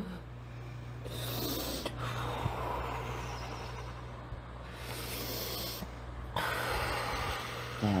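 A woman taking slow, deep breaths in and out through the nose, each breath a long hiss lasting a second or more, over a steady low electrical hum.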